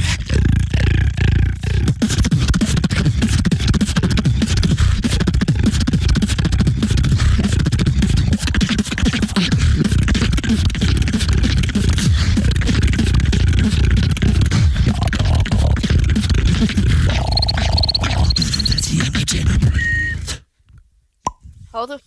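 Two beatboxers performing together into handheld microphones: a dense, bass-heavy stream of kick and bass sounds. Near the end a high wavering whistle-like tone is layered on top. The beat stops abruptly about twenty seconds in.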